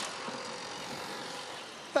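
Formula E Gen3 electric race car running on track, heard as a steady hiss of tyre and air noise with no engine note.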